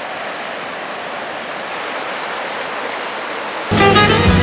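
Whitewater rapids on a slalom course rushing steadily, then cut off abruptly near the end.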